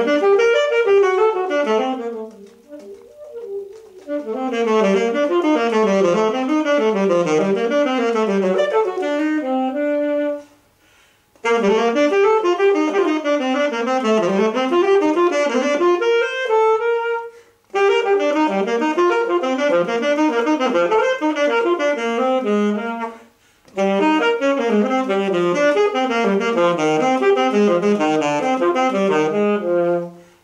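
Alto saxophone playing fast running passages and zigzag arpeggio figures in long phrases. Brief pauses for breath fall about ten, seventeen and twenty-three seconds in.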